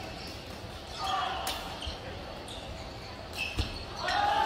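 Badminton rally in a large sports hall: sharp racket hits on the shuttlecock, two of them about two seconds apart, with faint voices on court.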